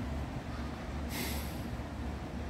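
A short breath close to the microphone about a second in, over a steady low hum.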